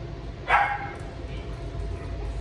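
A dog barks once, a single short bark about half a second in.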